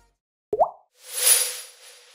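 Station ident sound effects: a short rising bloop about half a second in, then a swelling airy whoosh over a held tone that fades away.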